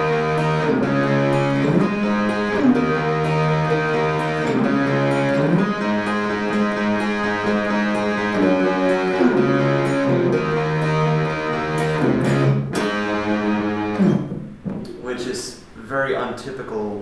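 Electric guitar playing sustained strummed chords for a chorus part, the chord changing every second or two; the playing stops about fourteen seconds in.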